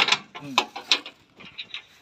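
Metal clanks and clicks as parts of a farm machine are handled and fitted together by hand, with a few sharp knocks in the first second and lighter clicks after.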